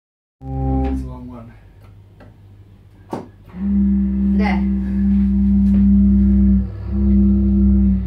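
Home pipe organ sounding: a chord that fades after about a second, then a low note held for several seconds, broken off once briefly and sounded again.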